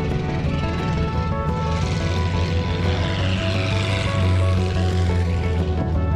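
A vintage race car passing close by, its engine noise swelling from about a second and a half in, peaking, then falling away near the end, over background music.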